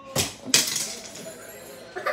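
A homemade catapult's flexible arm snapping as it flings a small key chain: a sharp clack, then about a third of a second later a second clack with a brief rattle as the key chain hits the floor.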